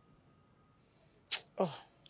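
A person's short, sharp breath, then a groaning "oh" that falls steeply in pitch, after a second or so of near quiet.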